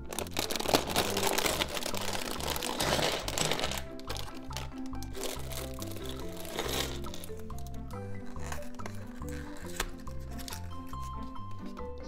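Background music with a steady beat. Over it, a thin plastic parts bag crinkles loudly as it is torn open and emptied during the first four seconds, with a shorter crinkle a few seconds later.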